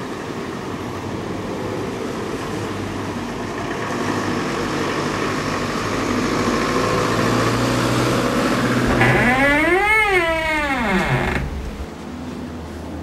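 Steady vehicle and road noise that slowly grows louder, with a vehicle passing close and loud about ten seconds in. The sound drops abruptly just before the end.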